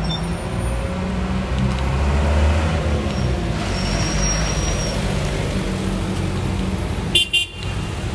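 Street traffic: a steady low rumble of a motor vehicle engine running close by. There is a brief knock near the end.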